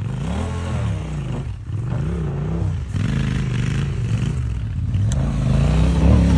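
Motorcycle engine revving up and falling back several times, its pitch rising and dropping in repeated swells, as the bike is worked up a dirt slope.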